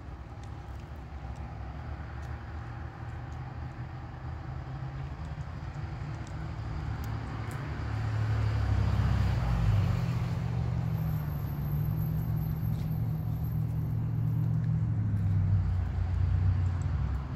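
A car's engine running nearby, getting louder about halfway through and then holding a steady low hum.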